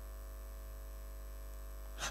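Steady electrical mains hum: a low, unchanging buzz with many even overtones, picked up through the microphone and sound system.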